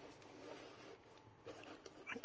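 Near silence, with a few faint rustles of hands handling a crocheted cord net bag.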